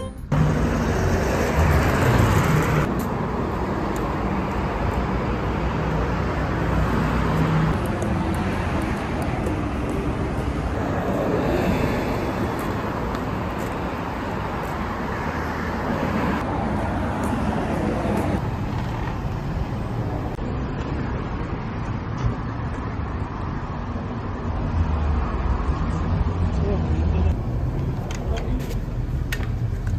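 City road traffic: cars and a bus driving past a sidewalk, a steady rush of tyre and engine noise, changing abruptly several times as short clips cut from one to the next.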